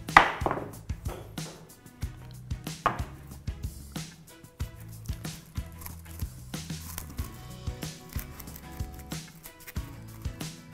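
A knife cleaning and cutting a protea stem: a series of short scrapes and cuts, the loudest just after the start and another about three seconds in, over background music.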